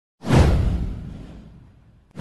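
A whoosh sound effect with a deep low boom. It sweeps in suddenly about a quarter of a second in, falls in pitch, and fades away over about a second and a half.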